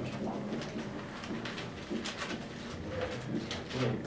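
Several dry-erase markers writing on a whiteboard: quick short strokes, several a second, with low voices underneath.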